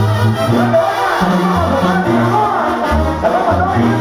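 Live Mexican banda music, loud: brass playing a melody over a steady bass line in an instrumental passage without lead vocals.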